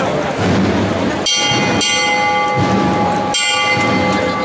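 A metal bell struck twice, about two seconds apart, each strike ringing on and fading, over a crowd murmur: the processional float's bell, the signal to its bearers.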